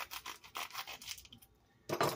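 Plastic sleeve of a frozen alcohol ice pop being handled and opened: a run of crinkling, rubbing rustles that dies away after about a second and a half.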